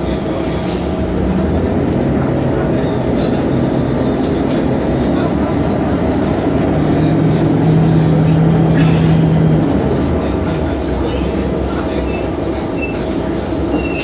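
Interior of a New Flyer D40LF transit bus under way, its Detroit Diesel Series 50 engine and Allison B400R transmission running with a steady low hum. The engine note grows louder for about three seconds midway through.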